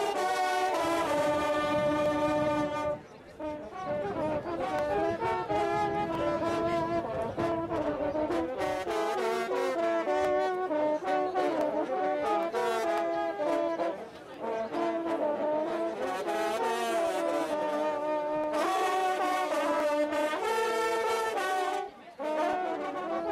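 A group of French circular hunting horns (trompes de chasse) playing a fanfare together, several horns sounding in harmony. It opens on a held chord, breaks off briefly twice, runs through quick changing notes, and ends on another sustained chord.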